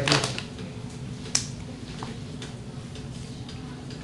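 Light ticks and taps of a pen on an interactive whiteboard while writing, with one sharper click about a second and a half in, over a steady low hum.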